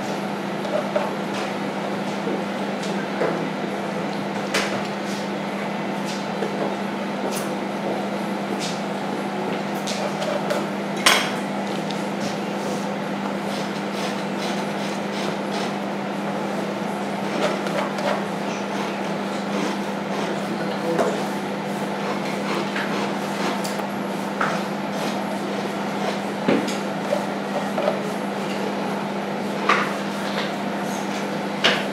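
Scattered light clicks and taps of a metal palette knife working oil paint on a stretched canvas and palette, the sharpest about eleven seconds in, over a steady low hum.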